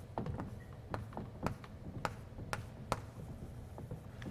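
Chalk drawing short strokes on a blackboard: a quick, uneven series of about eight sharp taps as the chalk strikes and scratches the board.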